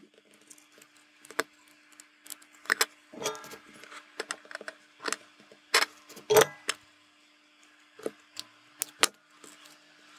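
Scattered sharp clicks and taps of a small circuit board and through-hole LEDs being handled and turned over on a desk. The loudest knock comes about six seconds in, over a faint steady hum.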